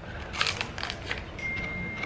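Plastic sleeve of a freeze pop crackling as it is bitten open, a quick run of small crackles and clicks in the first second or so.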